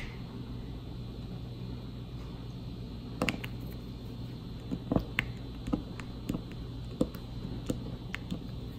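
Light, sharp clicks and taps of a diamond-painting drill pen setting resin drills onto the canvas, about eight of them at irregular intervals from about three seconds in, over a steady low hum.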